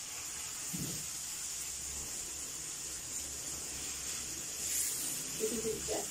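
Onions, garlic, ginger and chopped tomato sizzling steadily in a frying pan over a high gas flame while being stirred.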